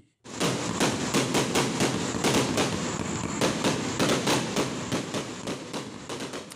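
Fireworks going off in a rapid, continuous string of sharp bangs and crackles, several a second, starting abruptly just after the start and thinning out and fading near the end.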